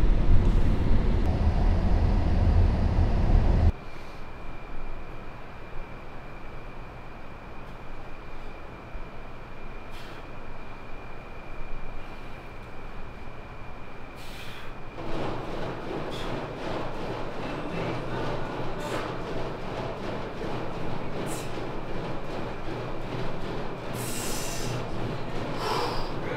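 Low road and engine rumble inside a Chevrolet car's cabin at highway speed, cutting off suddenly about four seconds in. A quieter stretch with a steady high-pitched whine follows, then from about halfway a busier mix with sharp clicks.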